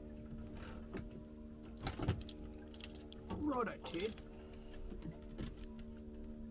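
Knocks and clatter of ropes and metal fittings being handled at a boat's stern, the loudest a sharp knock about two seconds in, over a steady low mechanical hum. A short vocal sound comes about three and a half seconds in.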